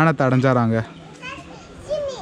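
A man talking for the first second, then quieter background voices of people and children.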